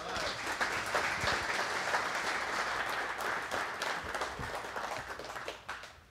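Audience applauding: many hands clapping together in a dense, even patter that dies away near the end.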